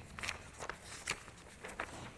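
Faint rustling of paper handouts being leafed through to a page, a few short, uneven crinkles and ticks.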